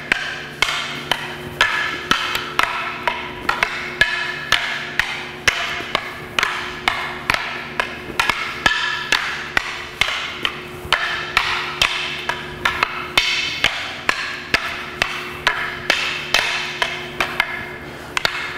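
Double sticks and a staff clacking together in a steady rhythm of about two sharp strikes a second, each with a brief ringing tone. This is a continuous box sumbrada flow drill of blocks, checks and counters.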